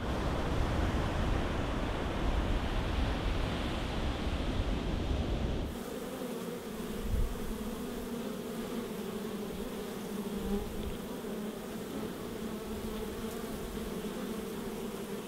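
Surf washing on a beach, a steady rushing noise. About six seconds in it gives way abruptly to honey bees buzzing at a hive entrance, a steady drone of many bees.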